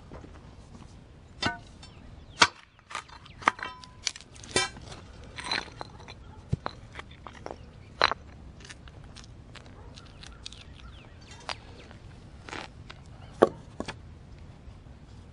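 Steel pry bar chiselling out a section of concrete curb between saw cuts: irregular sharp metal-on-concrete strikes and scrapes, a few of them ringing briefly, the loudest about two and a half seconds in and again near the end.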